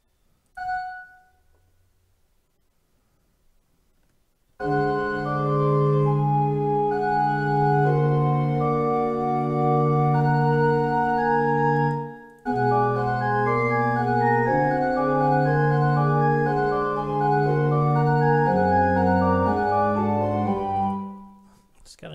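Notation-software playback of a multi-voice fugue passage in a synthesized MIDI pipe organ sound. A single short preview note sounds about half a second in, then the passage plays with sustained bass notes under moving upper lines, breaking off briefly about twelve seconds in before continuing until shortly before the end.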